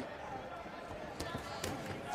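A few short, sharp knocks from a boxing ring during a bout, gloved punches and footwork on the canvas, over faint arena background noise.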